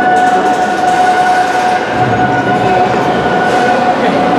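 Overhead workshop cranes carrying a lifted railcar across the hall: a steady high tone holds over a dense mechanical rumble that echoes in the large shed.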